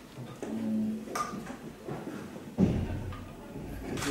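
A short voice sound early on, then a sudden low thump about two and a half seconds in, followed by a brief rumble.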